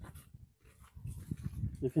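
Faint footsteps on a dirt path with some phone handling noise, then a man's voice begins near the end.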